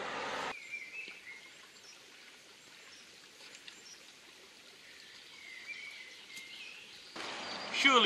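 Faint outdoor ambience of a small woodland stream, with a few short, soft bird chirps about a second in and again past the middle.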